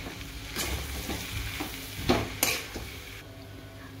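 A slotted steel spatula scrapes and knocks against a metal kadhai while stirring mashed potato and spices for samosa filling. A few sharper scrapes stand out, one about half a second in and two around the two-second mark, over a low sizzle from the hot pan.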